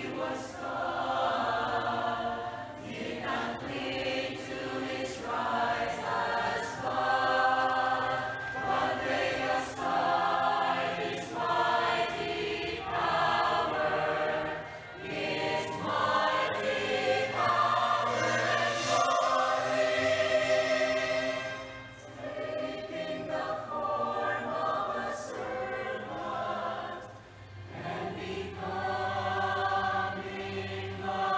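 Mixed choir of men and women singing a hymn together, in phrases that swell and ease with short breaths between lines.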